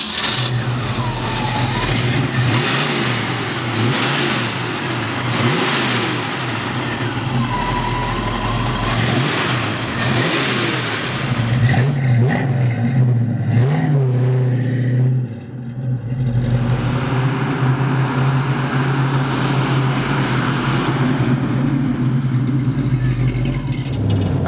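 A Ford 289 V8 with a Holley carburetor and headers, idling steadily, with the throttle blipped a few times so that the revs rise and fall.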